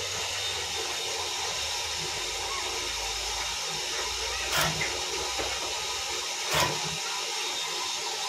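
Sugarcane bud-chip cutting machine running steadily with a low hum, and two sharp cutting strokes about two seconds apart, past the middle and near three-quarters through, as a cane is fed into the cutter head.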